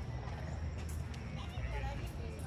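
Outdoor ambience: a steady low rumble on the microphone with faint distant voices.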